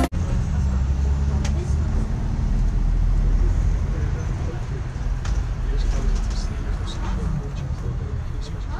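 Steady low drone of a MAN double-decker city bus driving, heard from inside on the upper deck, with faint voices in the background.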